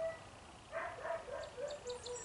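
Dog whining: a string of short, wavering high whines starting about a second in.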